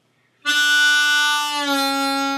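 Ten-hole diatonic harmonica in C playing the hole-1 draw note, D, starting about half a second in and held. Partway through it is bent down in pitch toward D flat.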